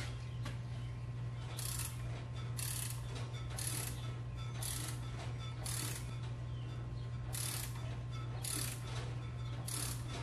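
Ratchet wrench clicking in short runs about once a second as it turns the forcing screw of a Powerbuilt strut spring compressor, squeezing the coil spring on a strut. A steady low hum sits underneath.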